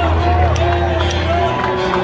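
Live heavy metal concert at the end of a song: a steady low amplified tone from the stage, which drops out about midway, under crowd cheering and shouting.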